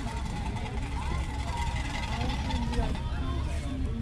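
Background chatter of passers-by over a steady low rumble.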